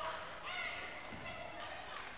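Several people's voices calling out and chattering at once in a gymnasium, with no clear words.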